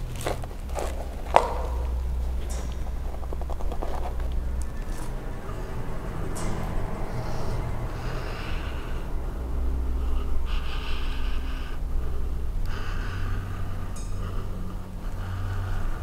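A woman breathing slowly and heavily, each breath a hiss lasting a second or two, as she tries to go into a trance to contact a spirit. Under it runs a low hum, and a few clicks and one sharp tap come in the first second or two.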